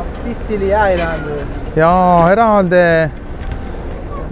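A person's voice making drawn-out, wavering vocal sounds over low street noise: a short one about half a second in, then a longer one about two seconds in.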